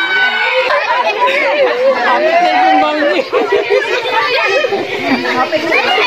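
A group of adults and children talking over one another, excited and laughing.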